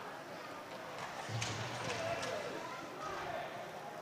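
Ice hockey game sound in an indoor rink: faint distant voices of players and spectators over a steady background, with a couple of light clicks of stick or puck about a third and half way through.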